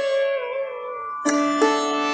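Sitar played solo: a held note is bent downward in a slow slide (meend) about half a second in, then two fresh plucked strokes ring out, the first just past a second in and the second about half a second later.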